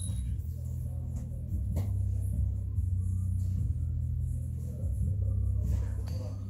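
A low, steady hum runs throughout, with a faint knock about two seconds in.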